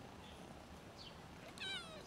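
A kitten gives one short, high meow near the end, falling slightly in pitch.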